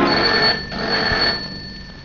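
Wall pendulum clock chiming: a bright ringing tone that swells twice, about a second apart, then fades away.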